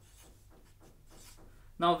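Marker pen drawing short strokes on paper, faint scratching as small crosses are drawn; a man's voice speaks briefly near the end.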